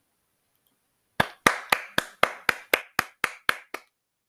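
Hands clapping about a dozen times at an even pace of roughly four claps a second, starting about a second in; the last few claps are softer.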